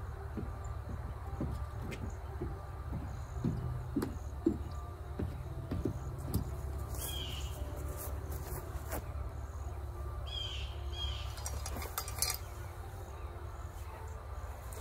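Outdoor ambience with a steady low rumble. Soft knocks and footsteps come from a man carrying a tripod-mounted camera rig, and a few short bird chirps sound around the middle.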